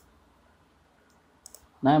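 Computer mouse clicks: one sharp click at the very start and a few faint ones about one and a half seconds in, with quiet room tone between.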